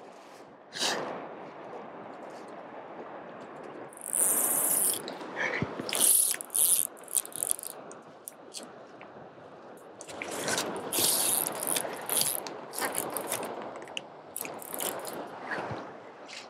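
Fly reel's drag buzzing in several bursts as a hooked Atlantic salmon pulls line off the reel, over a steady wash of river water.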